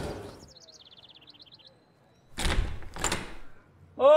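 A short high chirping trill, then a door being opened with two broad rushing thumps.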